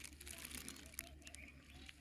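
Faint lapping and dripping lake water, with a few light clicks.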